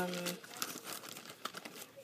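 Faint crinkling and rustling of items being handled, with a few small clicks scattered through it.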